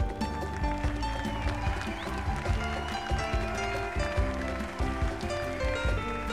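Live band playing an instrumental passage: sustained keyboard chords over a steady drum beat, with a lead line that bends in pitch about one to three seconds in.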